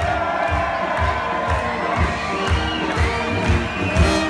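A large crowd cheering and shouting over a brass band that keeps playing underneath, its low beat steady at about two a second.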